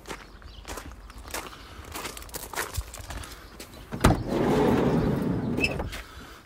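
Footsteps walking, then about four seconds in a clunk and a loud rolling rush of about a second and a half as the VW campervan's sliding side door is opened.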